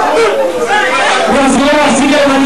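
A man's voice shouting and talking over a sound system, with the music briefly dropped out. A record with a steady bass note comes back in just past the halfway point.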